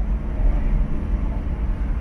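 Cabin noise of a classic BMW car cruising on a highway: steady low engine and road noise with a faint steady hum.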